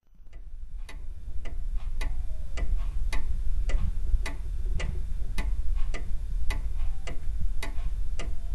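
Old mechanical wristwatch ticking evenly, a louder tick alternating with a softer one a little over three times a second, over a low steady hum. The watch runs although it had been declared impossible to repair.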